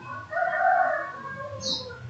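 A single drawn-out bird call lasting about a second, fading toward its end.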